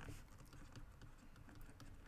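Near silence with faint, light tapping and scratching of a stylus writing on a pen tablet.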